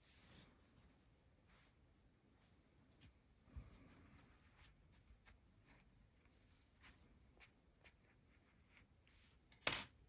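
Near silence with faint handling sounds: soft rustling and light taps as hands pick up and turn a stuffed crocheted piece and a steel sewing needle on a table, with a soft knock a few seconds in and a sharper tap just before the end.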